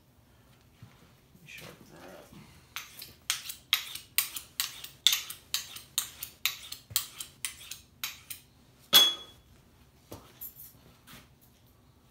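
Steel knife blade being drawn across a sharpener, about three quick strokes a second for several seconds, then a louder metal clink that rings briefly. The skinning knife has gone dull and is being resharpened.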